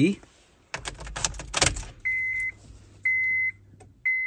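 Car keys jangling and clicking as the ignition key is turned to on, followed by the dashboard warning chime: steady high beeps about once a second, each about half a second long.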